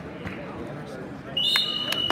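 Gymnasium crowd chatter, then about one and a half seconds in a loud, high, steady signal tone starts and holds: the signal ending the wrestling period.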